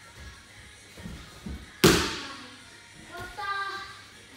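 A judoka thrown onto tatami mats, landing with one loud thud about two seconds in, after a few soft footfalls on the mat. A short voice follows near the end.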